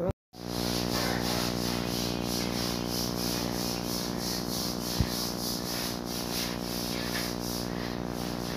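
A steady mechanical hum with a rushing hiss that pulses about three times a second, and a single click about five seconds in.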